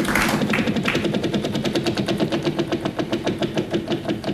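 Game-show prize wheel spinning, its pointer flapper clicking against the pegs in a rapid run of ticks that slows as the wheel comes to rest. A low steady tone runs underneath.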